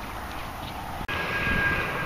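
A steady drone of a distant engine, louder after an abrupt cut about a second in, with a faint steady high tone just after the cut.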